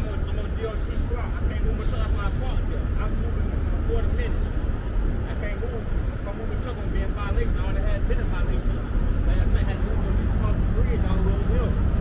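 Steady low rumble of heavy trucks and traffic idling and creeping, with faint, muffled voices over it.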